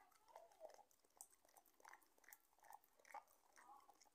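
Faint chewing and small wet mouth clicks from a pet eating out of a bowl, very quiet overall.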